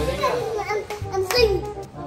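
A young child's voice chattering and calling out in short bursts, with one sharp click partway through.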